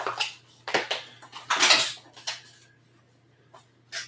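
Plastic seed-starting trays and other props being handled and set down on a table: a few clattering knocks and a longer rustling scrape in the first two seconds or so, then a short click near the end. A low steady hum runs underneath.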